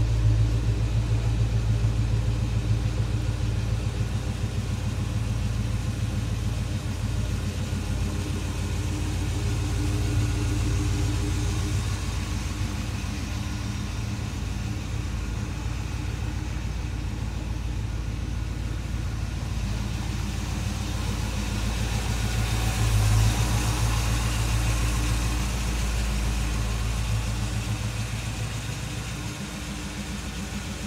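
1969 Chevrolet K5 Blazer's engine idling steadily through its exhaust, a little louder about three-quarters of the way in.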